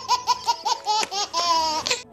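A baby laughing hard in quick, high-pitched bursts, about five a second, ending in one longer held laugh.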